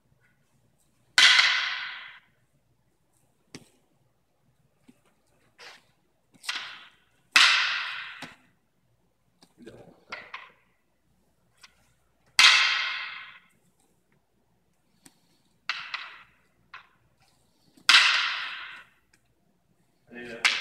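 Wooden practice canes striking each other in a cane-fighting drill: four loud, sharp clacks about five to six seconds apart, each ringing and echoing for about a second, with lighter taps in between.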